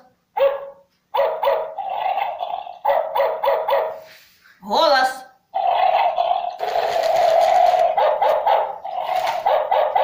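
Chi Chi Love Happy robotic plush chihuahua toy barking through its built-in speaker in answer to the "speak" voice command. Short yips rise and fall in pitch near the start and again about five seconds in, with long runs of quick repeated barks between and after them.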